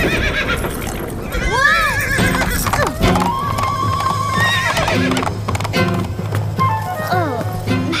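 A horse neighing and whinnying in alarm as it rears, in two rising-and-falling calls, one about a second and a half in and one near the end, with hooves clattering, over a background music score.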